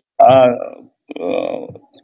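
Speech only: a voice making a drawn-out 'aa', then a second, rougher short vocal sound about a second in.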